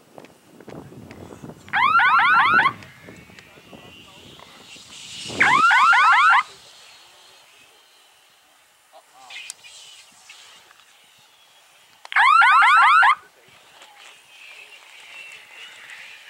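Electronic base-line signal of an F3B speed course: a loud warbling beep made of rapid falling chirps, about a second long, sounding three times, with a fainter one between the second and third, each marking the glider crossing a base. Between the first two signals a rising whistling hiss builds, the glider flying past at speed.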